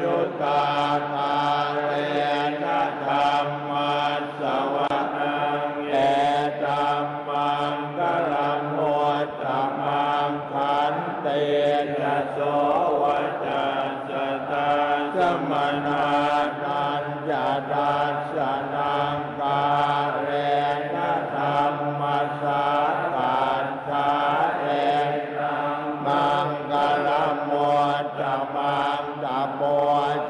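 A group of Thai Buddhist monks chanting Pali blessing verses in unison, many voices on a steady low monotone with an even, rhythmic syllable pace.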